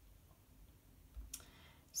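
Faint fingertip taps on a tablet's glass touchscreen over near-silent room tone, with a few small taps a bit over a second in.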